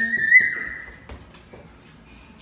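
A toddler's high-pitched squeal, about a second long, rising a little and then fading.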